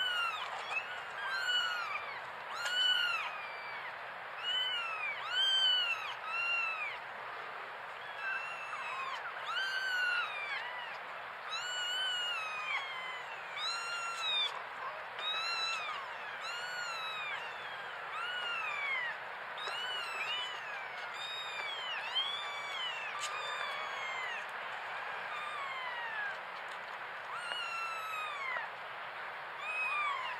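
Kitten mewing: many short, high calls that rise and fall in pitch, coming every second or two and now and then overlapping.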